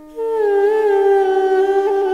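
Armenian duduk music: a melody note comes in a moment in, dipping slightly and wavering as it settles, over a steady drone held underneath.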